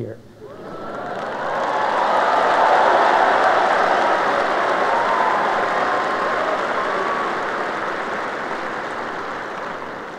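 Large audience applauding in response to a joke. The applause swells over the first couple of seconds and then slowly dies away.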